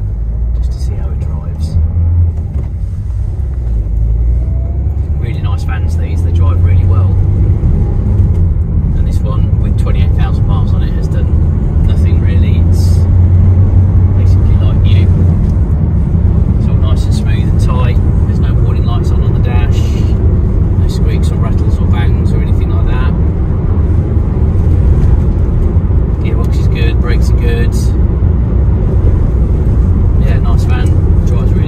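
Cabin noise of a Citroen Dispatch 1.6 BlueHDi diesel van on the move, a steady low engine and road rumble. It grows louder over the first several seconds as the van picks up speed and then runs on evenly at cruising pace.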